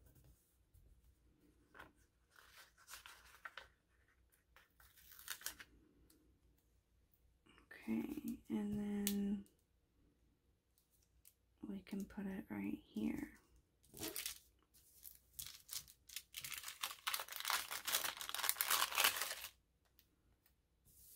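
Paper sticker sheets and a vellum sheet rustling and crinkling as stickers are peeled and pressed down, loudest in a long burst near the end. Twice in the middle, a person's voice hums or mutters briefly.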